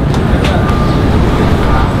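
Loud, steady low rumble under an even hiss: outdoor city background noise with no speech.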